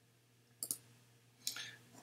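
Two faint computer mouse clicks about a second apart.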